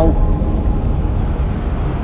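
Low, steady rumbling drone of a film's background sound design, with no distinct events.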